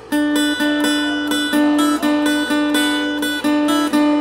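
Acoustic guitar picked in a repeating pattern: a low note re-struck about twice a second, with changing higher notes ringing over it.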